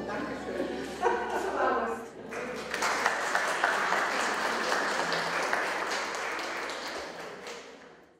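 A few voices, then a small audience applauding in a large room from about two seconds in; the clapping fades out near the end.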